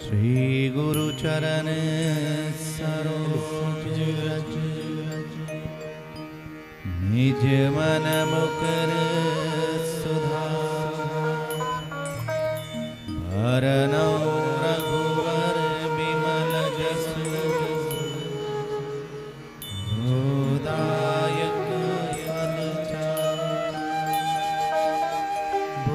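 A male voice chanting devotionally in four long drawn-out phrases. Each phrase slides up in pitch at the start and is then held steady for several seconds, with musical accompaniment.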